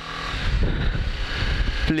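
BMW G310GS's single-cylinder engine running as the motorcycle rides slowly over a rough dirt lane, mixed with wind and road rumble on the microphone. A man's voice begins right at the end.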